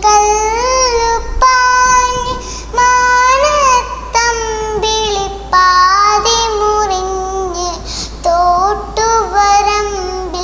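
A young girl singing a Malayalam song solo, in long held, gliding phrases with short breaks for breath.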